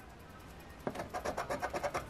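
Scratcher tool scraping the coating off a number spot on a 500X $50 scratch-off lottery ticket. It starts about a second in as rapid back-and-forth strokes, about eight a second.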